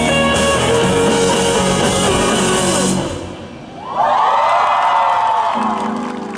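Live rock band with electric guitar and drums playing the final bars of a song, which ends about halfway through. A second later the audience cheers and screams.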